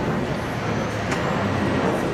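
Steady outdoor background noise with one sharp knock about a second in.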